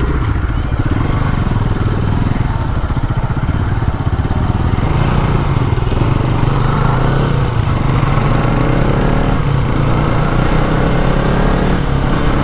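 Motorcycle engine running under way as the bike is ridden, with the engine note rising as it picks up speed partway through. There is a rush of wind or road noise on the on-board camera microphone.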